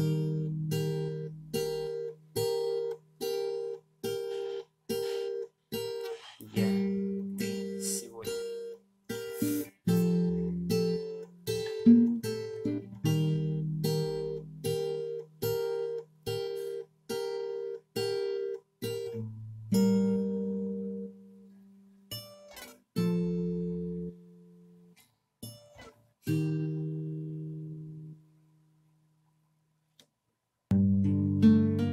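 Acoustic guitar fingerpicked: a repeating pattern of plucked notes about twice a second. In the last third it slows to three chords, each left to ring out and fade, and the playing stops shortly before the end.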